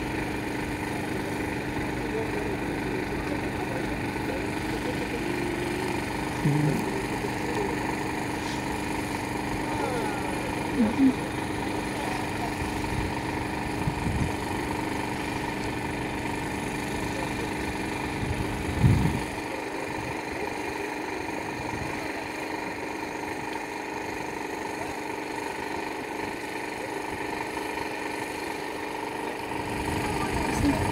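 Car engine running at a steady idle, with short bits of faint voices; the deepest part of the hum falls away about two-thirds of the way through.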